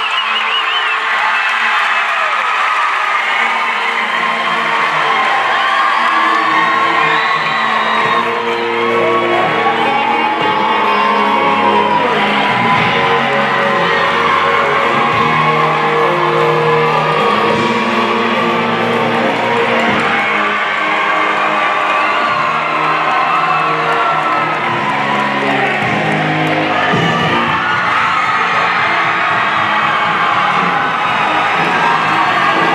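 Music playing throughout with held notes, while a crowd of high-school students cheers and whoops over it.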